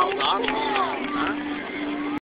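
Crowd of spectators talking, several voices overlapping, with a few low held tones underneath, recorded on a cell phone's microphone.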